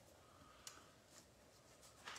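Near silence: quiet room tone, with one faint click about two thirds of a second in.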